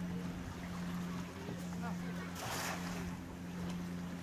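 A boat engine running with a steady low hum that dips briefly twice, with a short rush of noise about two and a half seconds in.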